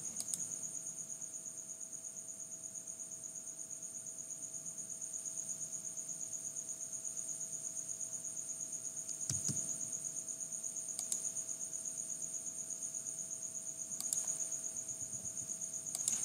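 Insects trilling steadily: a fast-pulsing, high-pitched chirring over a faint hum. A few soft computer mouse clicks come about nine, eleven and fourteen seconds in.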